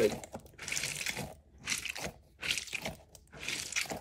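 A squishy fidget ball filled with water beads being squeezed in the hands over and over, making a wet, crackly squelch about once a second.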